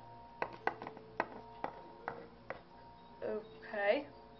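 Quiet background music with held tones. Over it come about seven small sharp clicks and taps in the first two and a half seconds: plastic toy figures being handled and set down on a wooden desk. A short voice sound follows near the end.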